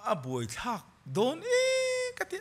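A man's voice: two short phrases gliding up and down, then from about a second and a half in a long high note held steady with a slight waver.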